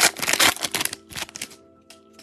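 Trading-card pack wrapper crinkling as it is opened and the cards are drawn out. There is a dense crackle for about the first second, then it thins to a few lighter rustles and clicks. Background music plays throughout.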